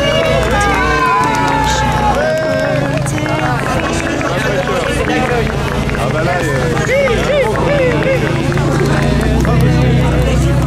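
Crowd of many people chattering at once, voices overlapping, over a steady low rumble that swells slightly near the end.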